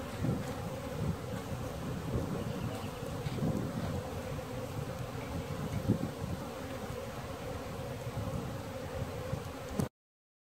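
Honeybees buzzing around the hives: a steady drone of many bees in flight, their pitch wavering as they pass the microphone. It cuts off abruptly near the end.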